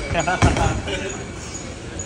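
A bowling ball landing on the lane with a heavy thud about half a second in, then a low rumble as it rolls away.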